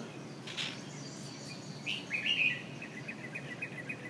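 Birds singing: a short chirp about half a second in, then from about two seconds a bird's song that opens with a higher note and runs into a fast series of repeated notes, about eight a second.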